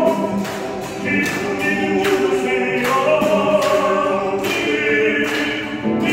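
Several voices singing a Korean Catholic hymn together to acoustic guitar, in long held notes with short breaks between phrases.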